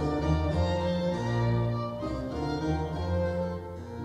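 Baroque instrumental ensemble of violins, cello and violone with harpsichord playing sustained chords that change about once a second.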